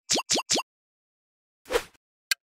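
Quiz-video sound effects: three quick, rising-pitch pops in the first half second as the answer options appear on screen, then a short whoosh near the end.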